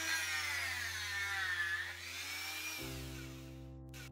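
Handheld rotary tool running at high speed, its whine sagging in pitch and recovering as the bit cuts into a piece of pressed-wood board.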